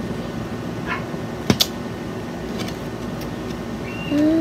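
Handling of a plastic jelly-candy packet: two sharp clicks close together about a second and a half in, with a fainter tick before them, over a steady low hum.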